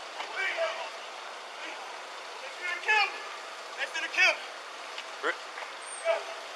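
Brief, indistinct voices of people talking a few words at a time, over a steady hiss of street noise picked up by a body-worn camera's microphone.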